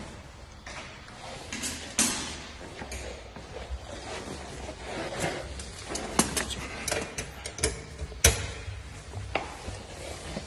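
Handling noise: irregular clicks and knocks, the sharpest about two seconds in and just after eight seconds, over a faint low hum.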